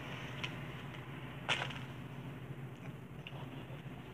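Faint handling of compost in an aluminium foil pan by gloved hands, with one sharp click about a second and a half in and a couple of fainter ticks, over a steady low hum.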